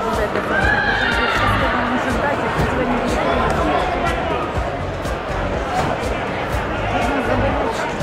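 Crowd noise in a sports hall during a karate bout: steady chatter with high, drawn-out shouts rising above it, and sharp clicks now and then.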